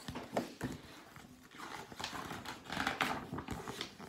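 A picture book being handled and laid down on a table: paper and cover rustling, with a few light knocks.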